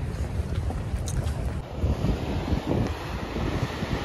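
Wind blowing across a phone's microphone in gusts, a low buffeting noise.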